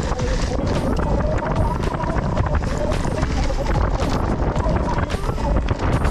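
Mountain bike rolling fast down a leaf-covered dirt trail: a constant rattle and clatter of the bike over the ground, wind buffeting the camera microphone, and a steady wavering whine.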